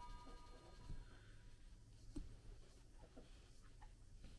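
Near silence: room tone, with a few faint taps from handling the knife while a cloth is rubbed on its blade.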